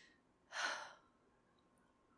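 A woman's short sigh about half a second in: a quick breath out that starts sharply and fades within half a second.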